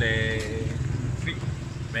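A road vehicle's engine running on the street, a steady low hum, under a man's drawn-out word that ends about half a second in.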